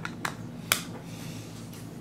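A few sharp clicks from hands handling a trading card and its hard plastic magnetic holder, the loudest about three quarters of a second in.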